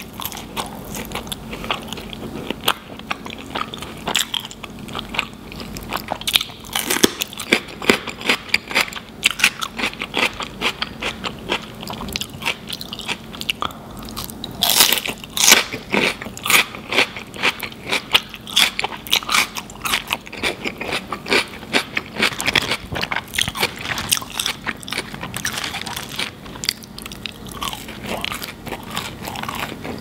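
Close-miked eating of cheese-covered fries and a cheeseburger: steady chewing and biting, with many short, wet mouth clicks and crunches. A denser, louder flurry of bites comes about halfway through.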